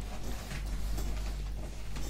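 Steady low background hum with faint room noise, in a short pause between speech.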